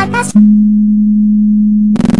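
The last sung notes of a Vocaloid song break off. A loud, steady, low electronic beep follows at one unchanging pitch for about a second and a half, then stops abruptly. It is a mock computer-error tone ending a song about a broken computer.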